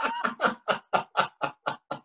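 A person laughing heartily in a quick run of short bursts, about six a second.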